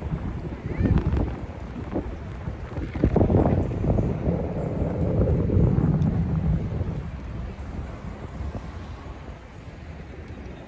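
Wind buffeting a phone's microphone outdoors, a gusting low rumble with a few knocks, heaviest in the middle and easing off towards the end.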